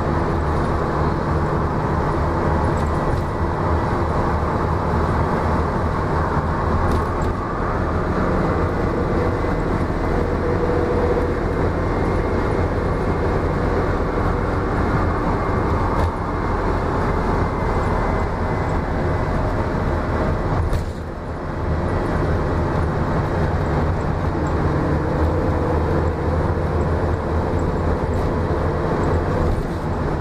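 Inside a 2004 Gillig Low Floor transit bus under way: the engine's steady drone with road and tyre noise. The level dips briefly about two-thirds of the way through.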